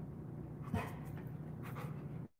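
Bernese mountain dog panting, with one short louder sound about three quarters of a second in.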